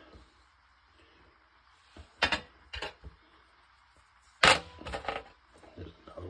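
Small silver bars clinking and knocking as they are handled: a few sharp clicks about two seconds in, then a louder knock about four and a half seconds in, followed by lighter clinks.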